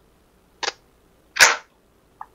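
Tarot cards being handled and laid on the table: two short, sharp snapping swishes, the second louder and longer, about a second apart.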